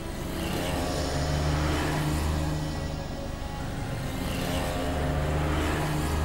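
City road traffic, with vehicles running past, mixed with a low, sustained background-music bed that swells twice.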